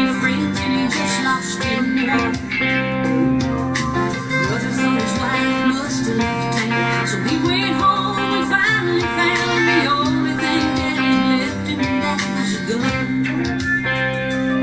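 Fender Telecaster electric guitar in open G tuning, hybrid picked (pick and fingers together), playing the song's chords and fills over steady backing music with a regular beat.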